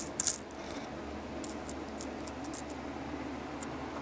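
Pennies clinking against one another as fingers slide and sort them on a cloth: a couple of sharp clinks at the start, then lighter scattered clicks.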